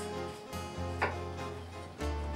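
A chef's knife cuts through a cucumber and knocks once on a plastic cutting board about a second in, over steady background acoustic guitar music.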